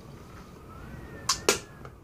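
A man spitting dip juice into a handheld cup, with two short sharp clicks about a second and a half in.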